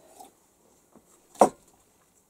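Faint drinking sounds from a mug, then a single sharp knock about one and a half seconds in as the mug is set down on a shelf.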